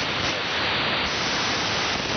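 Loud, steady hiss and static from a shortwave receiver tuned to the 75-metre AM amateur band, with no readable voice. This is band noise during poor propagation conditions.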